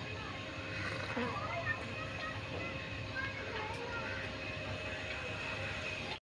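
Faint, steady outdoor background with distant, indistinct voices.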